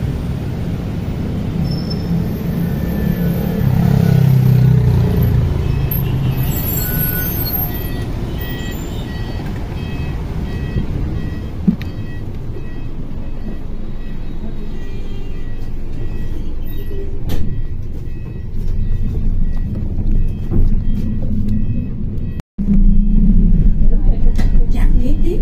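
City bus pulling in with a low engine rumble that builds, then a short hiss of its air brakes about six seconds in. Steady bus engine noise follows, with a repeated high electronic beeping for several seconds.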